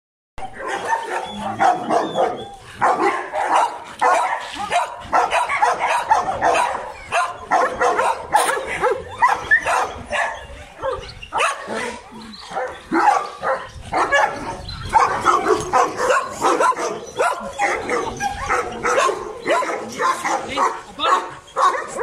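A pack of dogs barking, one bark over another with hardly a pause.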